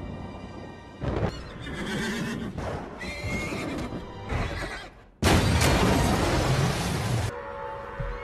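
Horses neighing over a dramatic film score, then a sudden loud burst of noise about five seconds in that lasts about two seconds before sustained orchestral chords.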